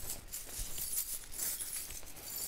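A velvet drawstring pouch of small metal charms being handled: the cloth rustles and the charms inside clink faintly.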